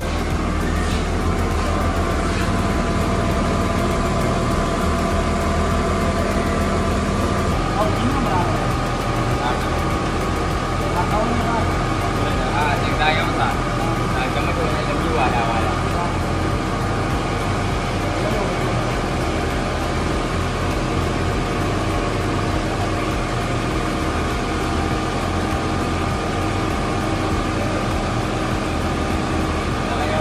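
Ice cream machine's electric motor running: a steady hum with a high held whine that does not change.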